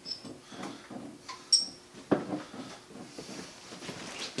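Quiet handling sounds while bottling mead: small clicks and knocks, with a short high ringing clink of glass bottles about one and a half seconds in and a duller knock about two seconds in.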